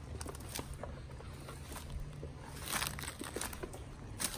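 Footsteps crunching through dry leaves, dead sticks and brush, with scattered small snaps and crackles, a denser run of them about three quarters of the way through, over a low steady hum.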